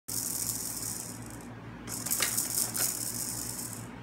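A plastic stadium cup shaken as a rattle, something loose inside it rattling, in two spells of shaking with a short pause between.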